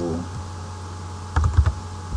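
Computer keyboard typing: a quick cluster of three or four keystrokes about one and a half seconds in, over a steady low hum.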